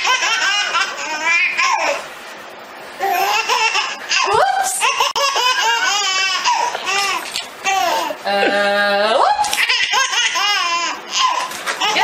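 Baby laughing hard in repeated bouts of high-pitched belly laughs with short pauses between them. Past the middle, a lower steady tone is held for about a second.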